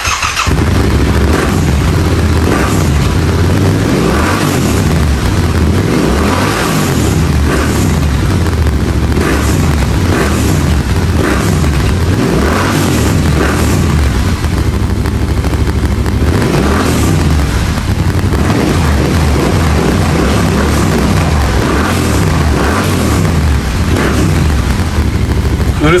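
Yamaha Ténéré 700's 689 cc parallel-twin engine running through a freshly fitted HP Corse high-mount slip-on exhaust, blipped again and again with short rises and falls in revs. The exhaust note is not too loud, a refined, good sound.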